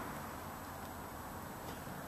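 Faint, steady background noise with a low hum; no distinct sound event.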